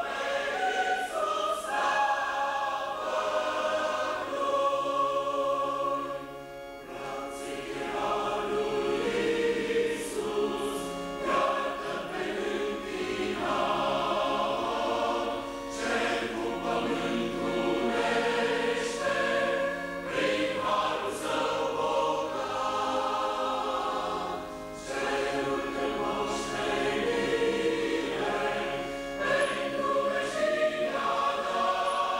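Mixed choir of men and women singing in parts, several voices holding notes together, with short breaks between phrases about six and twenty-five seconds in.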